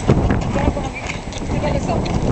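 Footsteps crunching on loose gravel, an irregular run of short steps, with people's voices talking over them.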